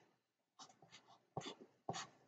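Black felt-tip marker drawing on paper: a run of short, faint scratchy strokes as lines are drawn. They start about half a second in and are strongest near the end.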